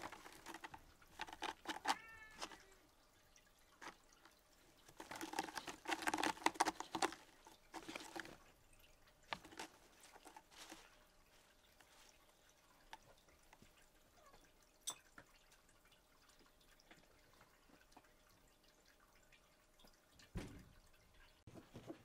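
A red tabby-and-white domestic cat grooming itself, its tongue making soft wet licking clicks in two runs, with a short cat call about two seconds in. A soft thump comes near the end.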